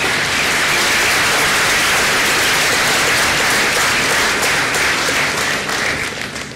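Large audience applauding steadily, dying away near the end.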